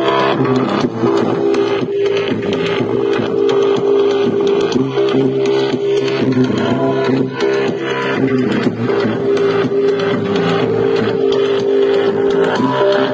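Music with long held notes playing at a steady level through the speakers of a Sharp GF-9696Z boombox.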